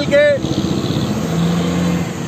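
Low rumble of motor vehicle engines in street traffic close by, with a steady low engine note coming in about a second in.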